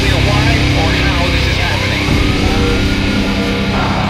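German beatdown hardcore/death metal music playing at a steady loud level, with sustained heavy distorted chords and gliding pitches over them. A voice is heard along with the music.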